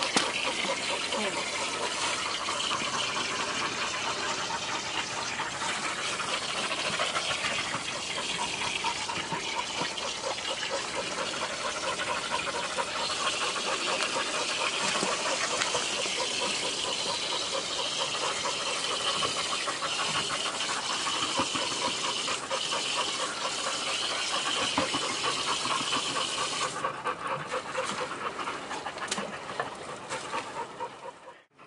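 Pit bull-type dogs panting hard and fast in a steady, even rhythm of breaths while locked in a mating tie.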